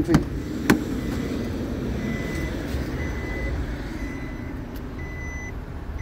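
Two sharp clicks from a Nissan Qashqai's keyless-entry door handle and latch as the door is opened. From about two seconds in, the car's warning chime beeps repeatedly with a short high beep, over a low steady rumble.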